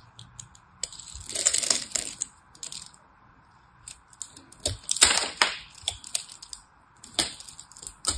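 A craft knife carving into a bar of scored soap: crisp crunching and crackling as small soap cubes and flakes break off under the blade. There are two longer bursts, about a second in and about five seconds in, a shorter one near the end, and scattered light clicks between.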